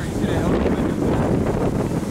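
Wind buffeting the microphone: a steady low rumble, with faint voices beneath it.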